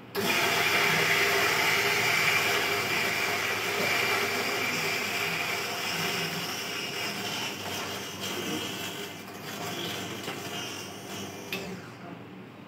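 Electric coffee grinder switching on suddenly and grinding a dose of coffee beans for about eleven seconds, loudest at first and growing quieter in the second half before it stops.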